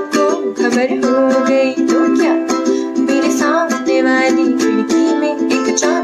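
Ukulele strummed in a steady rhythm, with a woman singing a Bollywood melody over it, her voice bending and wavering between notes.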